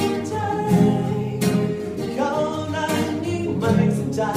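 A boy singing while strumming chords on an acoustic guitar.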